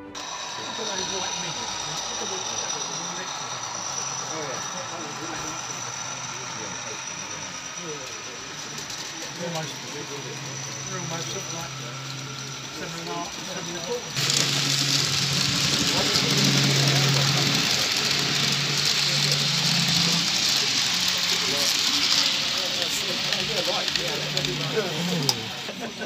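Indistinct voices of people talking in a room, with a steady hiss that comes in sharply about halfway through and runs on almost to the end.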